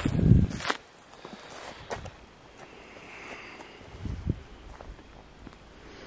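Footsteps on a gravel and dirt driveway: a burst of low thumps at the very start, then quieter steps with a few faint knocks.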